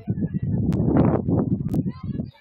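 Low, rumbling noise that rises and falls in uneven gusts, typical of wind buffeting an outdoor camera's microphone. A few faint higher calls come through near the end.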